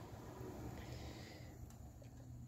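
Faint, steady low hum of the Opel Corsa C's electric radiator cooling fan running while wired directly to power, showing the fan motor itself works.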